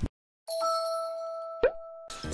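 Editing sound effects: after a brief dead silence, a ringing chime tone starts about half a second in and slowly fades, and a short rising pop comes near the end.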